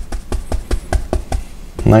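Wide bristle paint brush tapped repeatedly into oil paint on a palette, a quick even run of soft taps, about six a second, working the colour into the end of the bristles.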